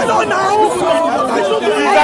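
Several men talking over one another at close range in a tense exchange, with crowd chatter behind.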